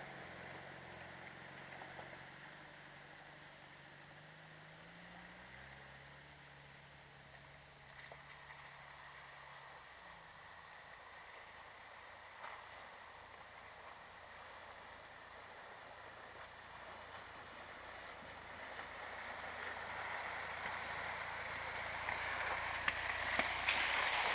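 4x4 engines running at low speed as the vehicles wade through a flooded lane, with a steady rush of running water. The engine note steps up in pitch about five seconds in and fades after about ten seconds, while the water noise grows louder towards the end as a vehicle comes closer.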